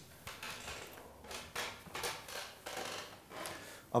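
A string of faint rustles and soft knocks as a cello and its bow are lifted from the floor and a person settles onto a padded piano stool with them.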